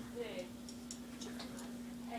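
Quiet room tone: a steady low hum with a few faint, scattered ticks and a trace of a distant voice.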